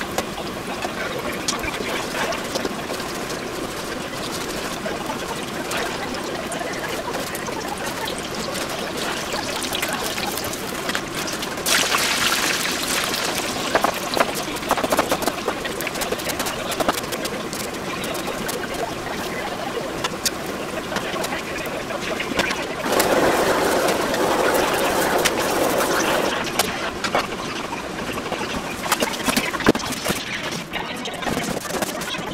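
Hot oil sizzling and bubbling steadily as food deep-fries in a pot, with a pan of meat frying beside it. The sizzle swells louder about twelve seconds in and again for a few seconds from about twenty-three seconds, with occasional sharp clicks throughout.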